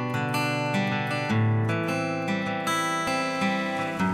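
Background music: a strummed acoustic guitar playing the instrumental opening of a song.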